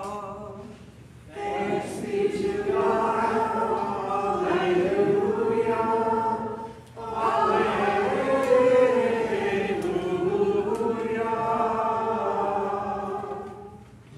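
Voices singing together unaccompanied in two long phrases, with a short break about seven seconds in. This is the sung response to the Easter-season dismissal with its double alleluia.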